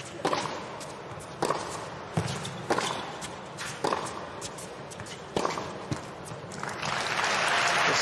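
A tennis rally: the ball struck hard by racquets again and again, sharp cracks about a second apart. Near the end the rally stops and crowd applause swells up.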